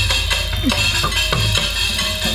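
Live organ dangdut music: electronic keyboard over a steady drum beat and bass, with a few drum strokes that slide down in pitch.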